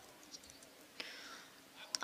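Quiet pause between spoken phrases in a talk, with a small click about a third of a second in and a brief faint voice sound about a second in.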